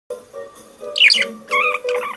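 Pet budgerigar chirping and warbling, loudest about a second in, over recorded music with steady sustained notes.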